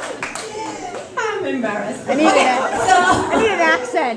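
Several people laughing and chattering together, the voices getting louder about a second in.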